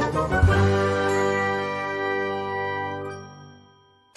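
A chime sound effect for a section transition: a struck, bell-like note whose many tones ring on and fade out about three and a half seconds in.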